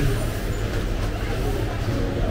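A steady low rumble under an even background noise.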